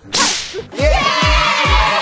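Added editing sound effects: a whoosh at the start, then four quick falling-pitch drops, each ending in a deep boom, under a bright, busy layer.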